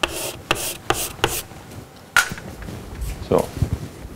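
Chalk scratching and tapping on a blackboard in a string of short strokes as a circle is coloured in, the last and sharpest stroke about two seconds in.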